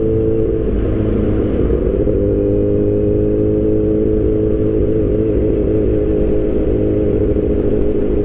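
Kawasaki Ninja H2's supercharged four-cylinder engine running under way at low speed, heard from the rider's seat. Its note breaks up briefly about half a second in, then holds steady.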